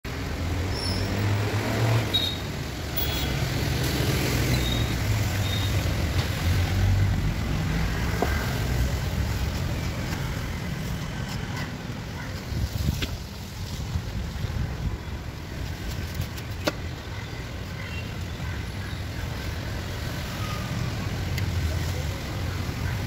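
Steady low rumble of road traffic, with a few faint sharp clicks scattered through.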